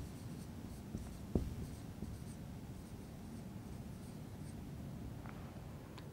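Faint strokes of a marker writing a few words on a whiteboard, with a couple of small taps about a second in.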